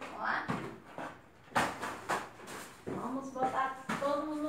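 Household cleaning sounds: a few sharp knocks and rustles as objects are handled and surfaces wiped, with a short voice-like sound near the end.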